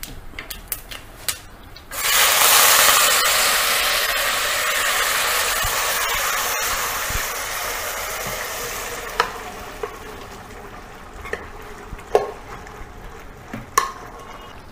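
Cooked black chickpeas and their cooking liquid poured into hot fried masala in a clay pot: a loud sizzle starts suddenly about two seconds in and slowly dies away. A few light knocks of a wooden spoon stirring follow near the end.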